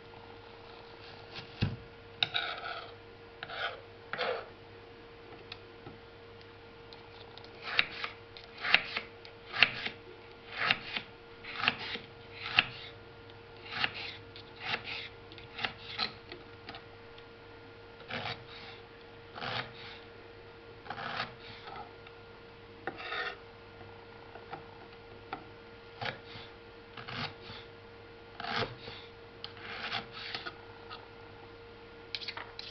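Kitchen knife slicing onion on a wooden chopping board: short rasping cuts come about one a second, faster through the middle and sparser toward the end, over a faint steady hum.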